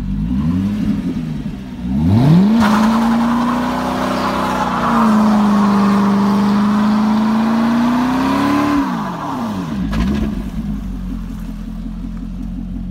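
2009 Corvette C6's LS3 V8 through a Borla ATAK exhaust in a burnout. First a quick rev blip, then about two seconds in the revs climb sharply and are held high for around six seconds while the rear tyres spin. Near the end the revs drop back, with one more small blip, and the engine settles to idle.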